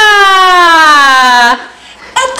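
A young girl's long, loud excited shriek that slides steadily down in pitch and cuts off about one and a half seconds in.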